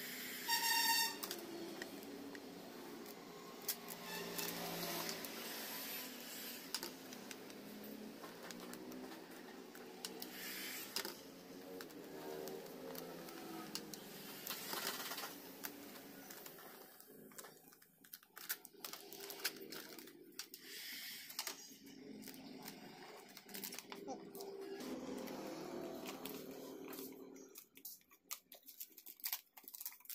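Indistinct voices talking over the rustle and crinkle of vinyl wrap film being handled. The crinkling turns into sharp, rapid crackles in the second half, as the film is bunched and pressed around the part.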